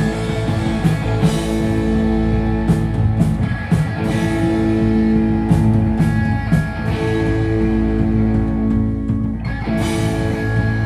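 Live punk band playing an instrumental stretch: loud electric guitar and bass holding long chords over drum-kit hits and cymbals, with no singing. The sound thins out briefly near the end, then the whole band comes back in.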